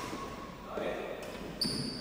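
A badminton rally in a hall with a wooden court floor. Racket strikes on the shuttlecock and a high shoe squeak at the start and near the end, with a player's voice about a second in.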